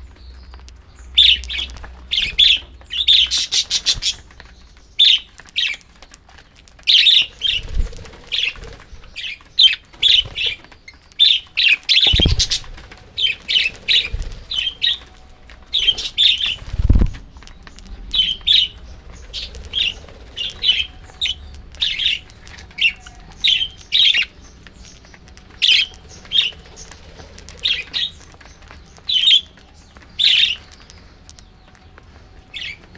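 A flock of budgerigars chirping continuously in quick, short calls. Three low thuds of wings fluttering close by fall a quarter, two fifths and just over halfway through.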